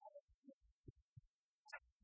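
Near silence, broken by faint, scattered low thumps and brief blips.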